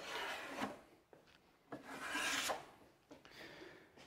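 Steel taping knife scraping wet joint compound across drywall tape in two long strokes, then a fainter short one near the end. The blade is being pressed down on the tape's outer edge to feather the compound flat so no ridge is left.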